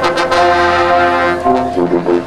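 High school marching band brass holding a loud sustained chord, with a few drum strikes near the start. About a second and a half in, the chord changes and the band moves into shorter, rhythmic notes.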